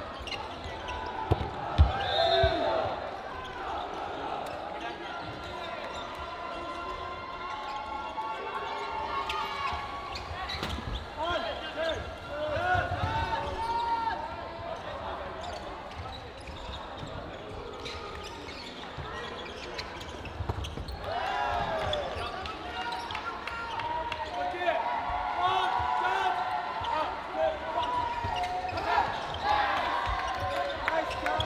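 Cloth dodgeballs bouncing and thudding on a wooden court floor during play, the sharpest thud about two seconds in, amid players' shouts and voices.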